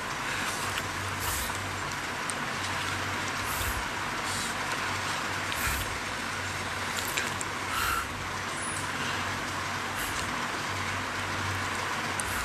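Steady background noise in a room, with a low hum and scattered faint clicks and rustles.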